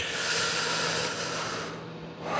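A breath into a close microphone: an even hiss that starts abruptly and fades out after about a second and a half.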